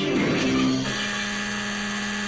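Guitar background music, then about a second in a steady electric game-show buzzer sounds and holds, signalling that the timed money-machine round is over.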